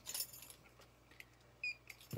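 Metal earrings on their display cards being handled: a few light clicks and a short, bright clink a little before the end.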